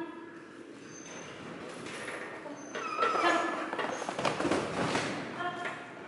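An indistinct voice calling out briefly, about three seconds in and again near the end, in a large echoing hall, over the light thuds of a handler and dog running across the matted floor.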